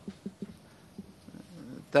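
A pause in a man's speech: quiet room tone with a few faint short taps, and his voice comes back at the very end.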